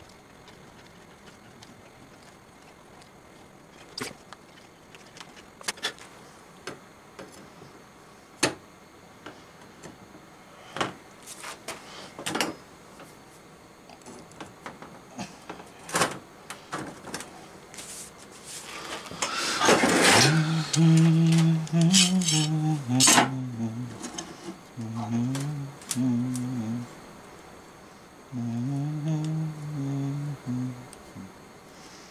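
Light clicks and taps of hands and small tools on a steel workbench. About two-thirds of the way in comes a few seconds of louder clattering as a heavy steel block and a bar clamp are set on a small stove door. Over the last ten seconds a man hums a low tune in short phrases.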